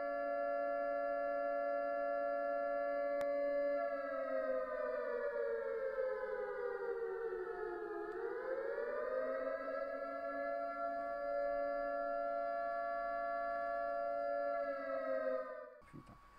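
A steady, siren-like electronic tone with several pitches sounding together, which slides slowly down in pitch for about four seconds, swings quickly back up and holds, then cuts off abruptly just before the end.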